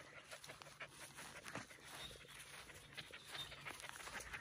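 Faint panting of a young Australian Shepherd dog playing close by.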